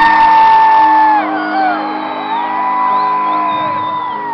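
Live band music: a male lead singer holds two long, high sung notes over steady sustained keyboard chords, the first at the start and the second from a little past the middle.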